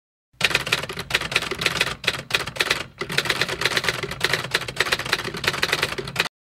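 Typewriter sound effect: rapid, continuous key clacking that starts suddenly out of silence, with a brief pause about halfway through.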